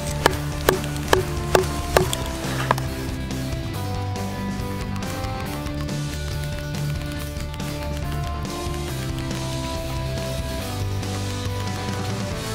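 Background music with slow, sustained notes. Over its first couple of seconds, a run of sharp chops about two a second: a Schrade SCHF37 survival knife chopping through a thick branch.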